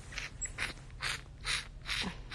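Baby mouthing a feeding bottle's nipple: short, soft sucking and snuffling sounds, about five in two seconds, as he plays with the bottle rather than really drinking from it.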